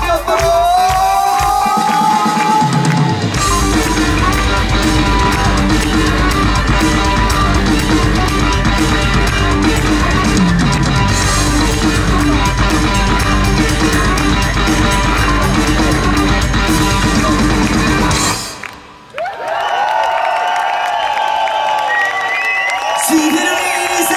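Rock band playing live through a PA, heard from the crowd: an instrumental passage of electric guitars, bass guitar and drum kit. The full band comes in loud with heavy bass about three seconds in, drops out briefly near the end, and then guitar bends carry on over a lighter backing.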